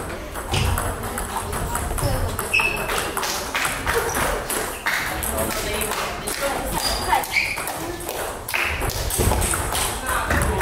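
Table tennis ball knocking off bats and the table in irregular sharp clicks, over indistinct voices.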